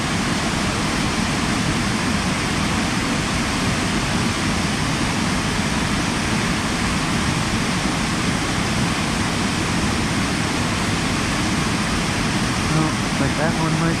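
Steady rush of a waterfall pouring into a pool, an even wash of falling water that holds at one level. A man's voice comes in near the end.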